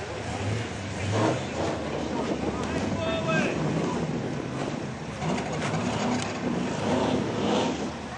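V8-engined Ford Cortina running on a grass course, its revs rising and falling as it is driven, with voices of onlookers over it.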